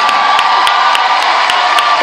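Arena crowd cheering and clapping as a skater is introduced over the public address, with a long steady high note held over the noise.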